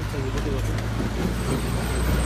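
A motor vehicle engine idling close by, a steady low rumble, with faint voices over it.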